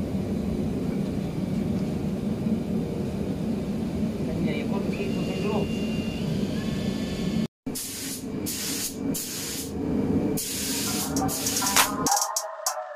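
A steady low rumble, with a cordless drill whirring briefly about halfway through as it stirs paint in a cup. After a sudden cut, a paint spray gun hisses in repeated short bursts.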